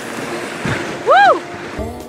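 River rapids rushing under a raft, with a person's short high whooping cry that rises and falls about a second in. Music begins near the end.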